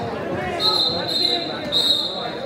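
A referee's whistle blown twice: a long, steady, high-pitched blast and then a second shorter one near the end, over the chatter of a gym crowd.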